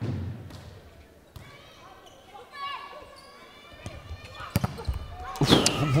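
Volleyball being struck in an indoor sports hall: several sharp hits about four and a half to five seconds in, over faint court and crowd noise. A low thud comes right at the start.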